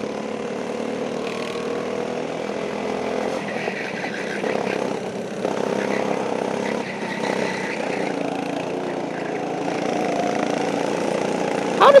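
Small go-kart engines running on the track, the engine note rising and falling with the throttle through the corners, with another kart running close by.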